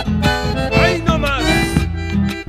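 Recorded chacarera music: an accordion-type bellows instrument and guitar playing over a steady beat. A swooping, sliding pitch rises and falls near the middle.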